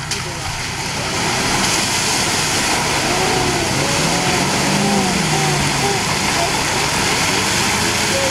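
Four-wheel-drive's engine working hard as it pushes through a deep mud hole, the revs rising to a peak about halfway through and then easing off, over a steady wash of muddy water surging and splashing around the front of the vehicle.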